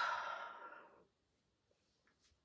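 A woman sighing: one long, breathy exhale that fades away about a second in.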